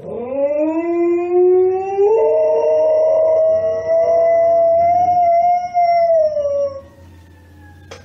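Dog howling: one long howl that rises in pitch as it starts, steps up about two seconds in, holds steady, then falls away and stops about seven seconds in.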